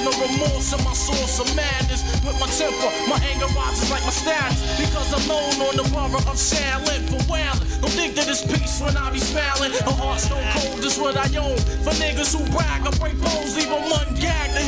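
Hip hop track playing: rapping over a beat with a heavy bass line that drops out briefly several times.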